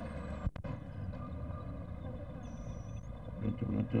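Outdoor street ambience: a steady low rumble with faint distant voices, on an old film soundtrack that cuts out briefly about half a second in. Louder voices come in near the end.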